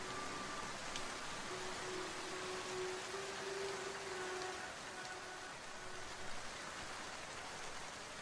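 Steady rain falling, an even hiss. A few soft held music notes fade out under it in the first half.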